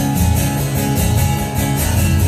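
Acoustic guitar strummed in a steady rhythm, solo and without vocals, as the song's opening.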